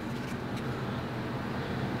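Steady low background hum of room tone, even throughout, with no handling clicks.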